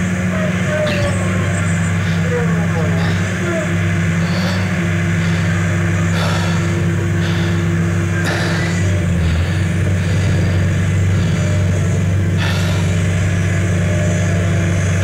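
Diesel engine of a Liebherr crawler crane running steadily, a constant low hum.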